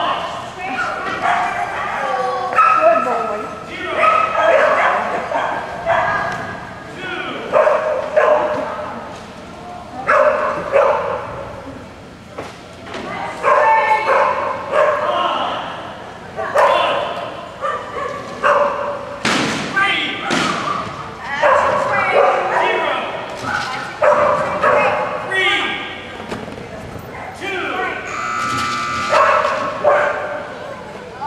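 Dogs barking and yipping over indistinct talking, with a few sharp thumps.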